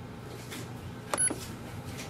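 Canon Pixma TR4720 printer's control panel giving one short, high key-press beep a little over a second in, as its arrow button is pressed to switch the two-sided copy setting on.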